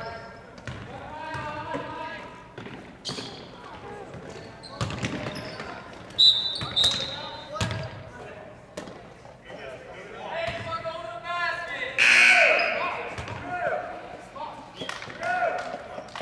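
Basketball dribbled on a hardwood gym floor, bounces ringing in a large hall, under voices of players and spectators calling out, loudest with a shout about twelve seconds in.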